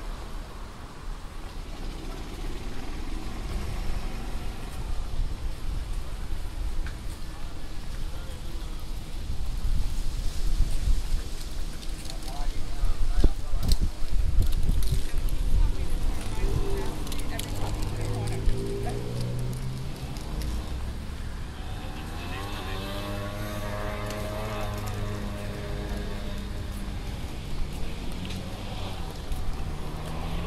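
Street ambience on a walk along a town sidewalk: a steady low rumble of traffic, with passing vehicles and people's voices, which come through more clearly in the second half.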